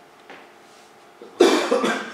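A person coughing: one sudden, loud cough about one and a half seconds in, after a quiet moment.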